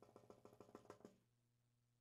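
Fast, faint, even run of taps on a wooden pulpit, about a dozen a second, like a finger drumroll; it stops a little after a second in.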